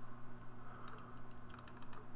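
Light clicking at a computer: one click a little before a second in and a quick cluster of clicks near the end, over a steady low hum.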